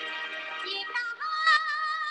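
A recorded song playing: a high singing voice over backing music, settling into one long held note a little over a second in.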